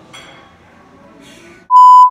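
A steady, loud beep of the reference tone that goes with TV colour bars, edited in as a transition. It starts near the end and stops abruptly after under half a second, over faint restaurant background.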